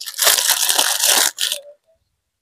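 Plastic packaging crinkling and rustling as a hand handles wrapped packets on a shelf. It stops abruptly a little past the middle.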